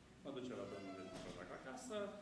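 A man's voice speaking, starting a quarter of a second in, in one long stretch with drawn-out vowels.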